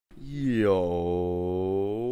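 A man's voice holding one long, low, drawn-out vowel, like a chanted call, starting just after the beginning with its vowel shifting slightly early on.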